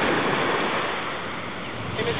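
Small waves washing onto a sandy shore: a steady rushing wash that eases slightly in the second half.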